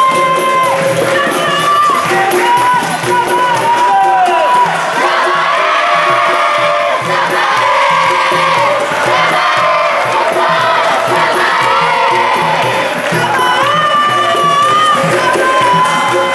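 Capoeira music: a crowd of children singing loudly and clapping to the rhythm of a berimbau and pandeiro, breaking into cheering and shouting in the middle before the singing comes back near the end.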